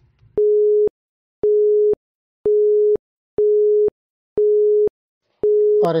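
Electronic countdown beep of a quiz timer: one steady tone repeated six times about once a second, each beep about half a second long with silence between, counting down the time given to answer.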